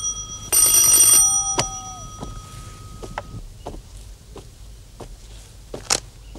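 Electric doorbell ringing in a loud burst of under a second, about half a second in. It is followed by a sharp click and then a few scattered small clicks and taps as the door lock is worked.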